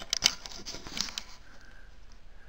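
Handling noise on a trail camera: a few sharp clicks and taps on its casing at the start and again about a second in, then faint hiss.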